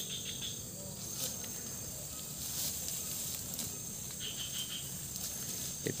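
Steady high-pitched insect chorus, crickets or cicadas chirring as one continuous drone with a thin steady tone in it.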